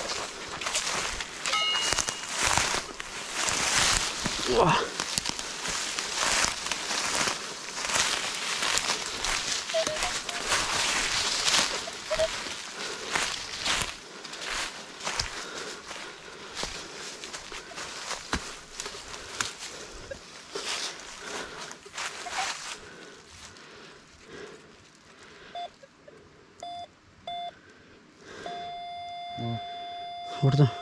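Footsteps crunching and rustling through dry leaf litter. In the last few seconds a metal detector gives a few short beeps and then a longer steady tone, its signal that the coil is over a metal target.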